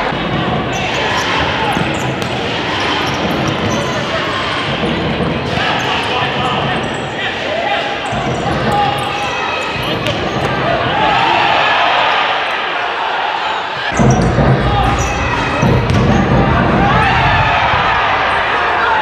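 Futsal game sounds on a hardwood gym court: the ball being kicked and bouncing on the floor, with players and spectators shouting, echoing in a large hall. The sound grows fuller and louder about 14 seconds in.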